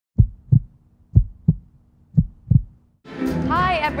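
A heartbeat-like sound effect for the intro logo: three deep double thumps about a second apart over a faint low hum. A woman's voice comes in about three seconds in.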